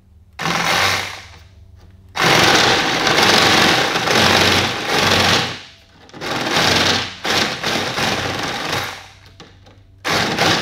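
Cordless rotary tool cutting into a plastic concentric vent pipe in several short passes, a gritty grinding that starts and stops. The longest pass runs from about two to five and a half seconds in.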